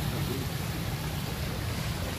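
Wind buffeting the phone's microphone: a steady, rumbling hiss, with faint voices in the distance.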